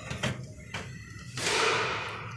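Plastic parts of a Chery Tiggo 7 Pro front bumper and grille being handled: a few light knocks, then a louder scraping rustle about a second and a half in as the assembly is shifted.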